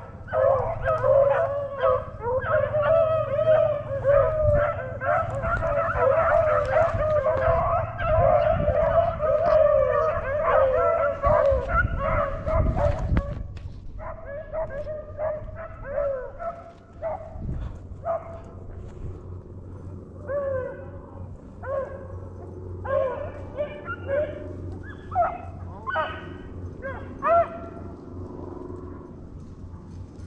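A pack of beagles baying as they run a rabbit, many voices overlapping for about the first thirteen seconds. The calls then thin to scattered single bays and yelps.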